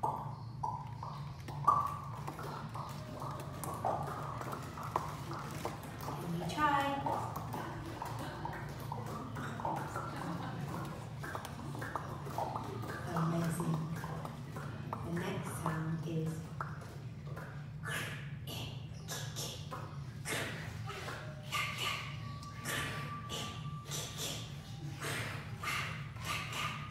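Vocal sound effects made by mouth, a performer and a children's audience practising them together: scattered short voiced noises, then a run of quick mouth clicks in the last third.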